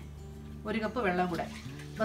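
A woman speaking briefly over background music with steady held low notes.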